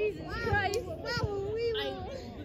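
Speech only: high-pitched, lively voices talking and calling out.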